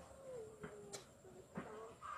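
Faint, distant gunfire: three sharp cracks at irregular spacing. A long drawn-out call, falling slightly in pitch, runs through the first half.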